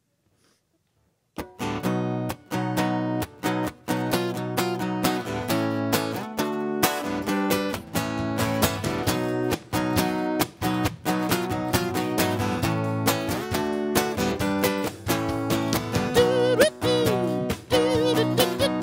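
A small live band starts a song after about a second and a half of near silence: strummed acoustic guitar with electric bass and drums keeping a steady rhythm. A wavering melody line joins near the end.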